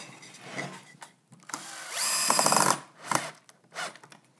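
Cordless drill-driver driving a Kreg pocket-hole screw, in one short run of under a second about halfway through, followed by a couple of light knocks.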